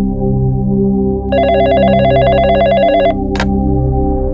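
Desk telephone ringing with an electronic warbling trill: one ring lasting almost two seconds starts about a second in. A sharp click follows as the handset is picked up. A low steady musical drone plays underneath.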